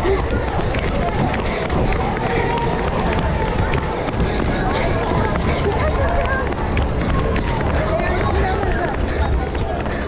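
Running footsteps on asphalt among a crowd of children running in a fun run, under a steady low rumble from the moving microphone, with voices and chatter of the crowd throughout.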